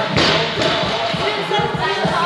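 Busy gym ambience: background music and people talking, with thuds of weights, while a heavy barbell is unracked for a squat.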